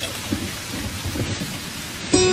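Rain falling steadily: a dense, even hiss with a low rumble underneath.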